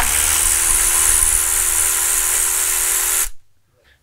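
A cordless power tool runs at a steady pitch for just over three seconds, spinning out a transmission pan bolt, then stops.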